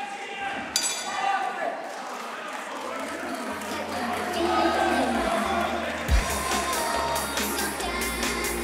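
Ring bell struck once about a second in, ringing briefly over crowd noise, marking the end of the round. A music track with a heavy bass beat fades in about halfway and grows louder.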